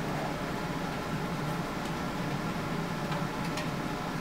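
Steady room tone: a ventilation system hums evenly, with a couple of faint clicks partway through.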